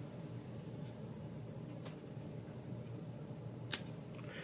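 Scissors snipping the foam body of a fly held in a tying vise: a faint snip about two seconds in and a sharper, louder snip near the end, over a faint steady low hum.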